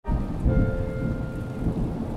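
Steady rain with a low rumble of thunder underneath.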